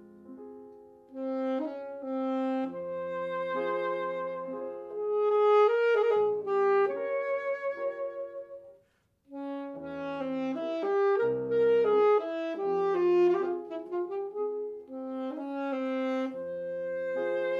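Saxophone and grand piano playing a classical duo piece: the piano plays softly at first and the saxophone comes in about a second in with long held notes. The music stops briefly just before nine seconds, then resumes with a run of quick notes.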